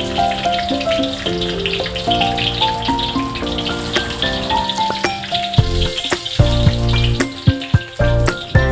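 Sliced garlic and shallots sizzling in hot oil in a wok, a steady hiss, over background music.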